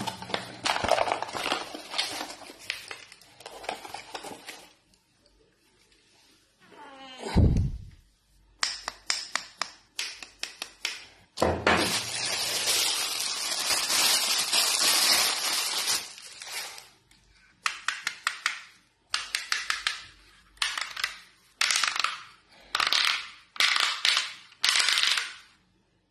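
Clear plastic packaging crinkling and rustling as a phone holder is taken out and handled, with light clicks and knocks from a cardboard box. Near the end come a run of short rustling bursts about a second apart.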